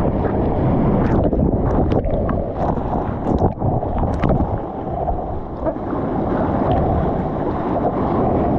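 Churning whitewater rushing and splashing right at a GoPro's microphone as a bodyboard is paddled out through broken waves, with water and wind buffeting the mic. The rush is steady, with many short sharp splashes through it.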